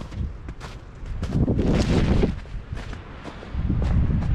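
Footsteps on snow and branches rustling against a jacket while walking through bushes, with a louder stretch of rustling about a second in that lasts about a second. A low wind rumble on the microphone runs underneath.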